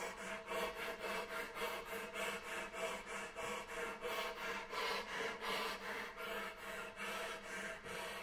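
Conch shell horn blown with breathy, airy pulses about four times a second, over a faint low held tone.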